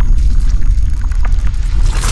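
Logo-intro sound effect: a loud, deep rumble with scattered crackles, swelling into a whoosh near the end.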